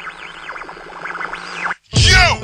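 Intro of a chopped-and-screwed rap track: many overlapping sounds swooping up and down in pitch over a hiss and a low steady hum, cutting off abruptly near the end just before the beat comes in.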